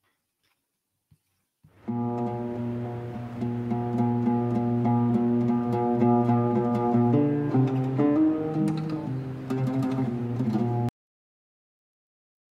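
Solo ʿūd (Arabic lute) playing an improvisation, with notes sustained over several seconds and the melody moving to new pitches about seven seconds in. It starts about two seconds in and cuts off abruptly near the end.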